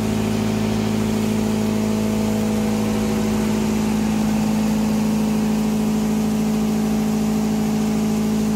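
Delamination mill's electric motor running steadily, an even machine hum with a strong low tone and a few higher steady overtones that do not change.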